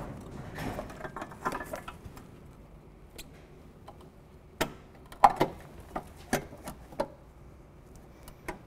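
Twin headlamp unit being pushed and wiggled into a car's headlamp aperture, its cabling shoved in behind. Soft rustling and handling noise come first, then from about halfway a string of separate sharp clicks and knocks as the unit seats.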